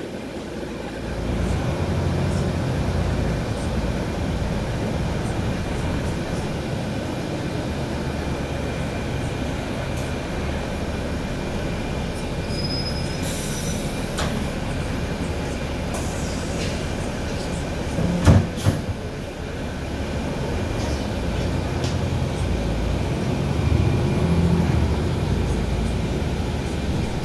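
Inside a NABI 416.15 transit bus: a steady low rumble of engine and drivetrain as the bus moves along, getting louder about a second in and swelling again near the end. Two sharp knocks close together a little past the middle.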